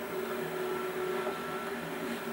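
Steady electrical hum with tape hiss, the background noise of an old videotape recording, with no clear impacts or footfalls.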